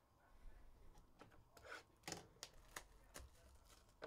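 Faint handling of trading cards: a string of light clicks and short rustles as the thick cards are picked up, slid and stacked, busiest around the middle.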